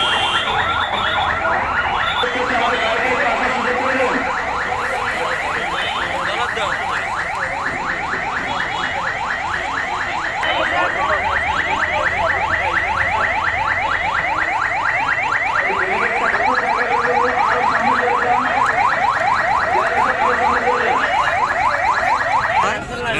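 Electronic siren on an ambulance-type vehicle in a fast, repeating yelp, several rising sweeps a second, starting about two seconds in, over the murmur of a large crowd.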